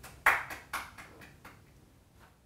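Scattered applause: a handful of separate hand claps, the loudest about a quarter second in, growing sparser toward the end.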